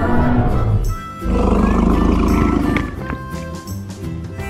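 Two roar sound effects, a dinosaur roar over cheerful children's background music: a short one at the start and a longer one from just after a second in.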